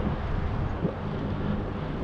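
Wind rushing over an action camera's microphone on a moving bicycle, with a steady low rumble of riding and one small knock just before the one-second mark.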